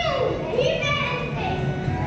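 Young children's voices singing into stage microphones, with pitched notes that glide and hold, over a steady low hum from the sound system.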